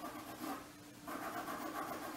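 A drawing tool scratching over paper in steady strokes, with a short pause just before the middle.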